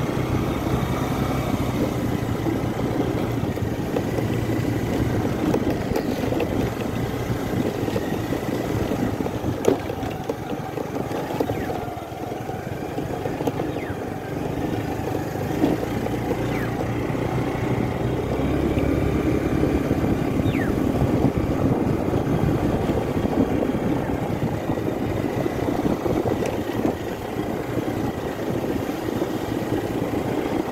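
A vehicle engine running steadily, with a constant low hum.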